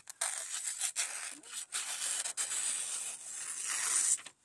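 An Ozark Trail axis-lock folding knife's factory edge slicing through a sheet of glossy paper: a long, continuous papery hiss lasting nearly four seconds, with a few small ticks along the way. It is a clean cut from a sharp factory edge.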